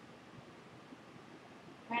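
Faint, steady room tone with no distinct sound, then a voice starts right at the end.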